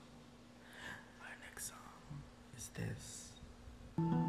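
Faint whispered speech close to a microphone, a few short soft phrases, over a low steady hum.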